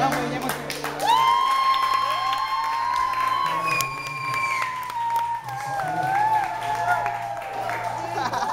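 A high voice holds one long note at a live show, starting about a second in and sagging slightly in pitch near the end. Other voices and some clapping from the audience sit underneath.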